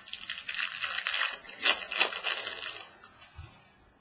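Wrapper of a Bowman Jumbo baseball card pack being torn open and crinkled: a dense crackling rustle lasting about three seconds, with a couple of sharper snaps near the middle.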